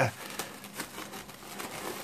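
Plastic cling film being peeled off a glass bowl, a soft irregular crinkling and crackling.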